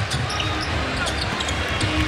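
Basketball game arena sound: a ball dribbling on the hardwood court over the crowd's steady noise.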